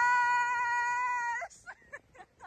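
A woman's long held scream, swooping up at the start and then held on one high pitch before cutting off about a second and a half in, followed by a few short faint sounds.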